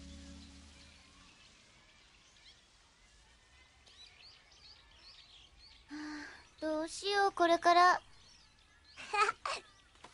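Background music fading out, then faint bird chirps. These are followed by a few short, loud, high-pitched voice exclamations, the loudest sounds here.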